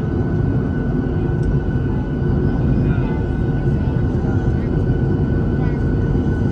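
Jet airliner's engines running steadily, heard inside the cabin while the aircraft taxis: a dense low rumble with a steady high whine over it.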